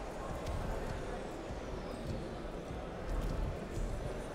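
Steady indoor wrestling-arena background noise, with a couple of dull low thuds about three seconds in.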